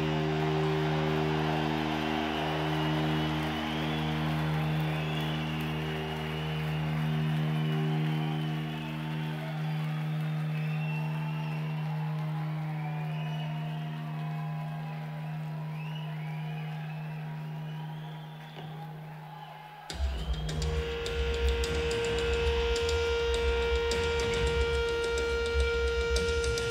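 Live rock band with electric guitars: a low held guitar note drones on and slowly fades under crowd noise. About 20 seconds in, the next song starts suddenly and loudly, with a sustained high guitar tone over heavy low bass.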